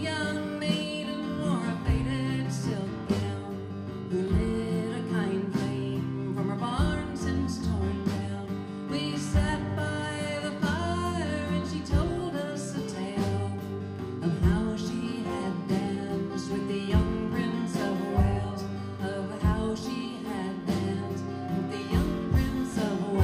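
Live country song on acoustic guitars, strummed in a steady rhythm, with a lap steel guitar playing sliding lines over them.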